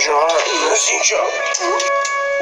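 A man's voice wavering up and down in pitch, sing-song, over background music.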